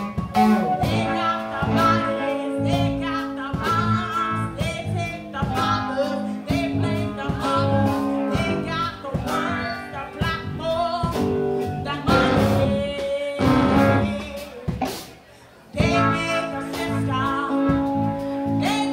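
A live band playing guitar-led music with singing and regular sharp hits. The music drops out briefly about fifteen seconds in, then comes back in.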